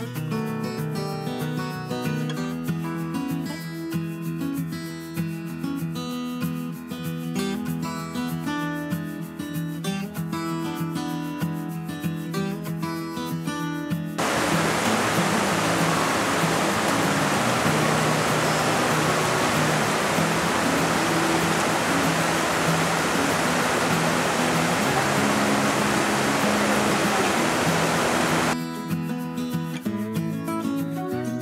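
Strummed acoustic guitar music, which cuts off about halfway through to the loud, steady rush of a fast mountain creek tumbling over boulders. The music comes back shortly before the end.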